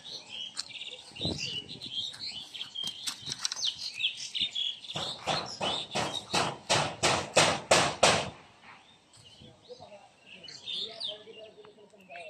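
Small birds chirping, then a quick run of about ten sharp slaps and rustles on dry grass, a few a second for about three seconds, from a freshly landed carp-like fish flapping on the bank.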